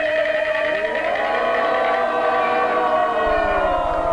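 Peking opera singing: a long drawn-out note of a daoban (倒板) line, held and slowly bending in pitch over jinghu fiddle accompaniment.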